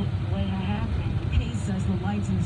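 A news radio broadcast talking inside a moving car's cabin, over a steady low rumble of road and engine noise.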